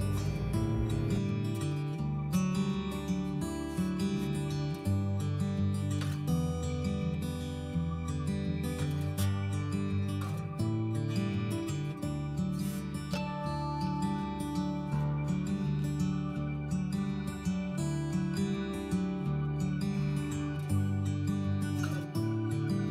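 Background music: gentle plucked acoustic guitar with a steady rhythm.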